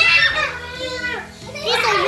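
Children yelling and squealing in rough play, with high-pitched voices that are loud at the start, ease off, then rise again near the end.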